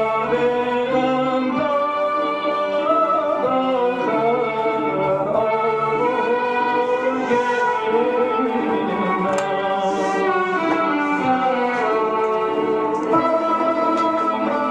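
A male singer performing Persian classical vocal music, holding long ornamented notes that bend between pitches, accompanied by a tar.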